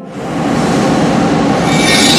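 A loud, rushing, rumbling sound effect that swells up within about half a second and then holds, with a thin high edge coming in near the end.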